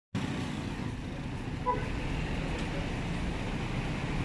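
City street traffic: a steady low rumble of passing cars and motorcycles, with one short vehicle-horn toot a little over a second and a half in.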